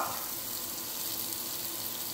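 Butter and chopped onion sizzling steadily in a Dutch oven.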